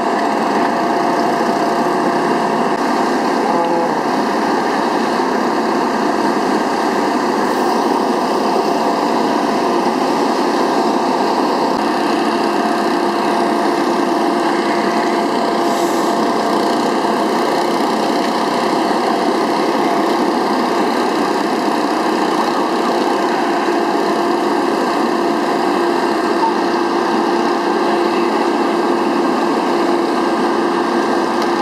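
A small engine running steadily at one even pitch, with no change in speed.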